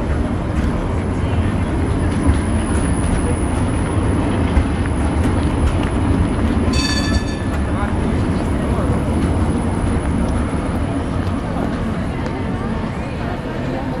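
A Škoda 15T low-floor tram passing close, a steady low rumble of wheels on rails and running gear that eases off in the last few seconds. Just before seven seconds in, a short ringing bell sounds once, as from a tram's warning bell, over crowd chatter.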